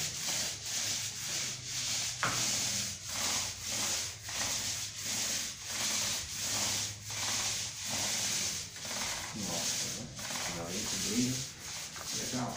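Paint roller on an extension pole rolling water-thinned paint onto a wall, a rhythmic rubbing that swells and fades about twice a second with each back-and-forth stroke.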